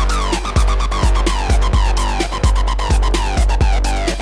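Electro breaks dance music: syncopated breakbeat drums over a constant deep sub-bass, with a run of repeated falling synth notes and busy hi-hats.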